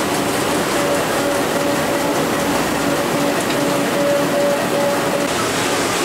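Four-colour offset printing press running: a steady, even mechanical rush with a faint constant hum.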